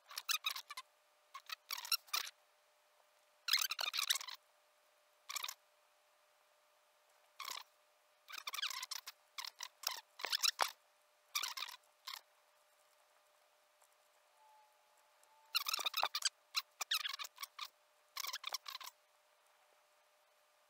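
Computer mouse clicked and dragged in short strokes, making about a dozen bursts of rapid clicks with pauses between.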